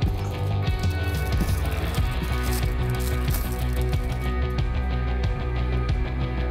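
Background rock music with a steady beat and no voice.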